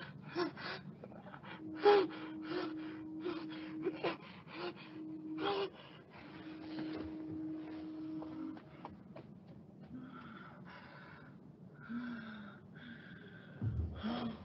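A woman's rapid, rhythmic gasping breaths with drawn-out whimpering moans, quick and strong in the first half, softer and slower later.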